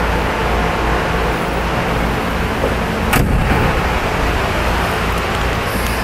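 Steady low rumble with a faint hum underneath, and a single sharp knock about three seconds in.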